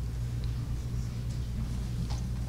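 Room tone in a lecture hall: a steady low hum with a couple of faint small ticks.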